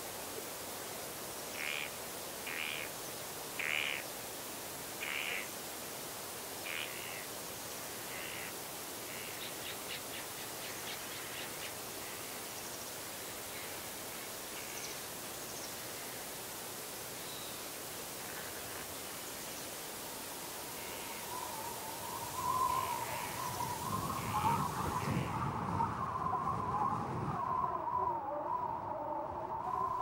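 Steady windy hiss with a series of short bird calls, about one a second, in the first half. From about 21 seconds a wavering, whistling wind builds over a low rumble and grows louder.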